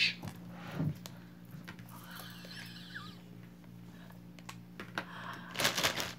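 Scattered light clicks and small taps from jewelry and its packaging being handled, with a louder crinkle near the end, over a steady low hum.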